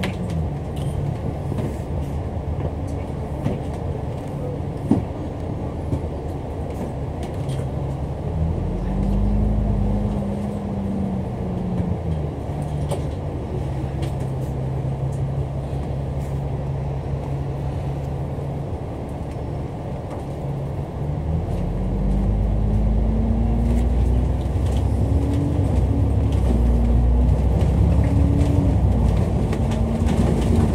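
Dennis Enviro500 MMC double-decker bus heard from inside on the upper deck: the engine and drivetrain tone drops as it slows, rises as it pulls away, holds steady, then climbs again through gear changes from about twenty seconds in, getting louder.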